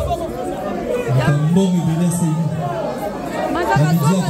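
Voices talking over music, with crowd chatter in a large hall.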